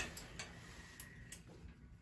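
Four faint, light clicks scattered over a couple of seconds, over a low room hush.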